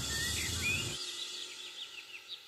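Small birds chirping in short repeated calls over a low background rumble; the rumble cuts off about a second in, leaving the chirps.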